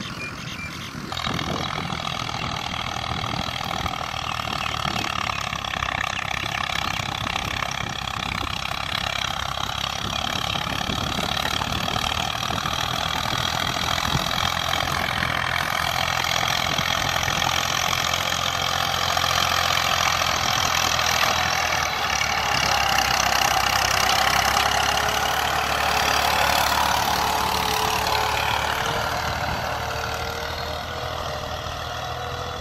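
Massey Ferguson 240 tractor's three-cylinder diesel engine running steadily under load while pulling a disc harrow. It grows louder as the tractor comes close, is loudest about three-quarters of the way through, then fades a little.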